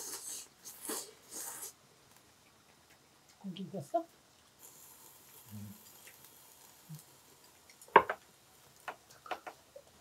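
Table-side eating sounds: metal tongs and chopsticks scraping and clicking against the pan and dishes, with one sharp click about eight seconds in and a few lighter taps just after, between brief murmured words.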